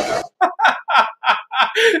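A man laughing in a quick run of short, breathy bursts, about six a second. A rush of noise from the film's soundtrack cuts off just after the start.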